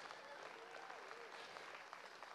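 Faint applause from a congregation, with a faint voice calling out briefly about half a second in.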